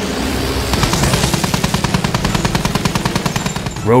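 Sound effect of a propeller aircraft engine running, with rapid, evenly spaced machine-gun fire starting about a second in.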